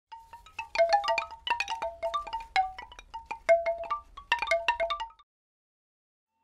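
Intro logo jingle made of bright chime-like struck notes in a quick, tumbling run, ending abruptly about five seconds in.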